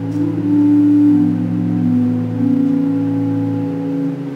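Organ playing slow, held chords, the notes shifting every second or so.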